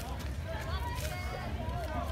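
Faint background chatter of several voices, with a steady low rumble underneath.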